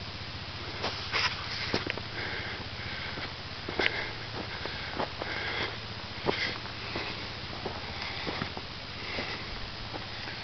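Footsteps crunching irregularly on a rocky, gravelly trail, with hard breathing from the walker about once a second.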